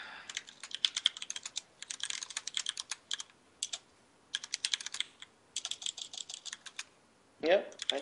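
Typing on a computer keyboard: quick runs of keystrokes broken by short pauses, as a line of code is typed.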